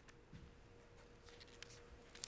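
Near silence: room tone with a faint steady hum and a few faint rustles and small clicks.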